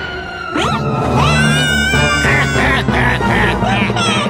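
Cartoon background music with a quick rising whistle-like glide about half a second in, followed by a cartoon creature's wordless cries: one held cry, then a string of short yelps.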